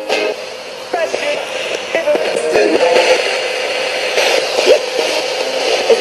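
RadioShack portable radio scanning up the FM band as a ghost box: hiss and static broken by split-second snatches of broadcast music and voices as it jumps from station to station.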